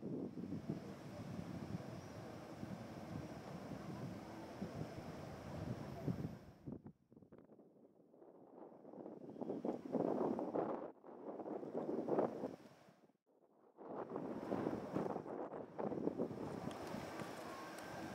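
Wind buffeting the camera microphone in uneven gusts, a rumbling rush that dies away twice, about seven seconds in and again about thirteen seconds in.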